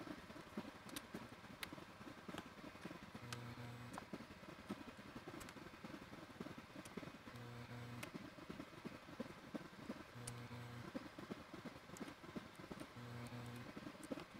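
Faint background music with a low note returning every few seconds, over scattered light plastic clicks as key stems are pulled out of keyboard keycaps by hand.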